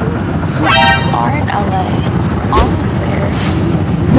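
A vehicle horn gives one short toot about a second in, over the steady road rumble inside a moving car, with scattered voices.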